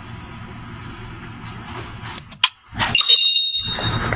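Faint steady hiss, then a click, then a loud, high electronic chime of a few steady tones held for about a second. The chime is a presentation slide-transition sound effect.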